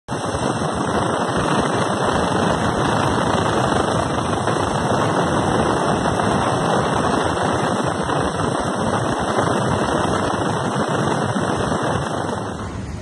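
Helicopter rotor and engine noise heard through an open cabin door: a loud, steady rush with a fast low pulsing from the blades.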